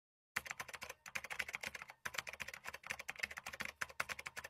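Keyboard typing sound effect: a quiet, rapid run of key clicks starting about a third of a second in, as the title text types itself out on screen.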